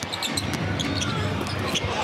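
Basketball being dribbled on a hardwood court, with a run of short sharp sounds and sneaker squeaks during live play.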